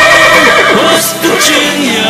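A horse whinnying: a wavering neigh over a country music backing track.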